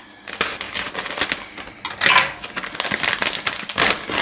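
A plastic food pouch of grilled kebab meat crinkling and crackling as it is handled and torn open across the top. The rustling is quick and irregular, with louder bursts about two seconds in and near the end.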